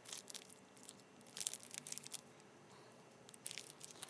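Rolls of washi tape being handled: three short spells of light rustling and crinkling with small clicks, near the start, in the middle and near the end.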